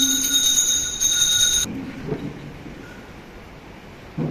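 Sustained high electronic tones, the end of the held music, cut off suddenly about a second and a half in, leaving quiet church room sound with a brief faint voice-like sound near two seconds.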